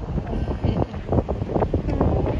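Wind buffeting the phone's microphone, an uneven low rumble that surges and dips.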